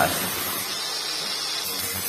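Nagawa NCG100 cordless angle grinder on its lowest speed, about 4,500 rpm, with its disc cutting through thin light-gauge steel hollow section: a steady grinding hiss.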